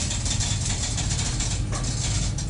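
Electric passenger lift (1 m/s, 400 kg capacity) travelling in its shaft, heard from inside the cabin: a steady running hum and rushing noise with a few faint ticks.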